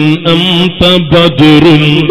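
A man's voice chanting in long, melodic phrases, holding steady notes with short breaks between them, in the sing-song intoning style of an Islamic religious sermon.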